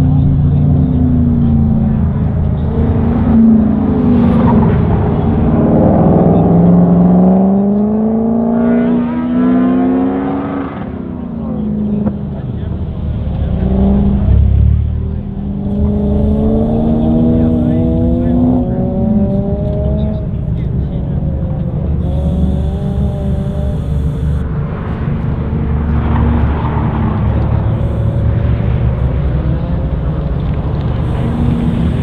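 Car engine on an autocross cone course, repeatedly accelerating and easing off: its pitch climbs over a few seconds, then drops, several times over, above a low steady rumble.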